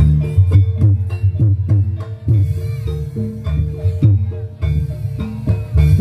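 Reog Ponorogo gamelan accompaniment: drums beat a busy, driving rhythm over sustained low gong tones.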